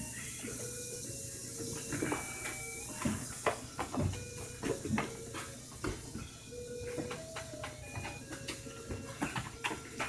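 Soccer ball being kicked and dribbled on concrete in a backyard game: a run of quick knocks and scuffs from ball and sneakers. Short squeaks or chirps come and go over a steady hiss.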